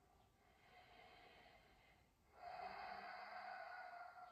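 A man breathing slowly and audibly in a held yoga squat: a faint breath, then a louder, longer one starting a little over two seconds in.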